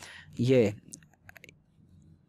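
A short run of light, quick computer mouse clicks, four or five within about half a second, starting just after a single spoken word about a second in.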